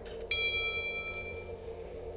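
A smartphone notification chime: one bright ding about a third of a second in that rings out for about a second, after a few laptop keyboard clicks. A low steady hum runs underneath.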